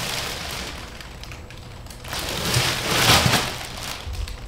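Plastic packaging rustling and crinkling as a bagged parcel is handled: one stretch fading over the first second, then a louder stretch from about halfway through.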